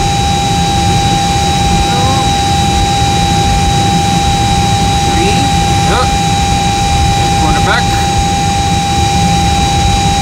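Steady, loud machinery drone inside an Airbus A320's avionics compartment: a heavy low rumble with two steady whining tones, one mid-pitched and one high.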